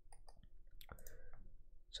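A series of faint clicks from a computer mouse and keyboard, spread unevenly through the pause.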